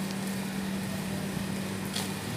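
A steady, low mechanical hum holding one constant pitch, with a brief click near the end.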